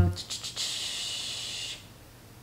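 A long breath drawn in: a steady hiss lasting just over a second.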